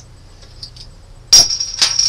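Bottle opener prying the metal crown cap off a glass beer bottle: a sharp metallic pop about a second and a half in, followed shortly by a second click.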